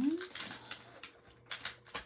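Clear photopolymer stamps being peeled off their plastic carrier sheet: a scatter of light clicks and crinkles of thin plastic, the loudest few about three-quarters of the way through.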